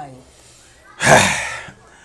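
A short pause, then about a second in a person lets out one loud, breathy gasp-like sound that fades away within about half a second.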